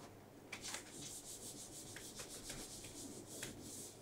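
Faint marker scratching on a whiteboard in a run of quick short strokes, starting about half a second in.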